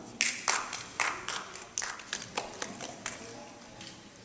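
A few people clapping, sparse and irregular, fading out within about three seconds.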